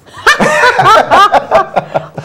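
Laughter, loud and chuckling, starting about a quarter second in.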